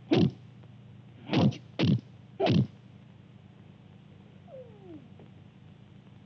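Four short, sharp cries, each falling quickly in pitch: one just as it starts, then three more between about one and a half and two and a half seconds in. A steady low hum runs underneath, and a faint falling whine comes near five seconds.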